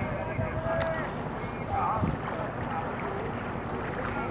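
Wooden rowboat being rowed with bamboo oars: oars working in their pins and water splashing, with a knock about halfway through, wind on the microphone and voices in the background.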